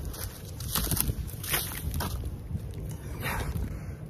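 Split firewood chunks tossed from a pickup bed, knocking and clattering onto a wood pile several times, over low wind rumble on the microphone.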